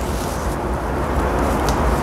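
Steady rushing air noise with a low rumble, and a few faint light clicks from hands working the spray gun's stuck, gummed-up air pressure regulator.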